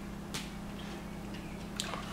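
A fork lightly tapping as shaved ham is spread on the bread, two faint clicks over a steady low hum.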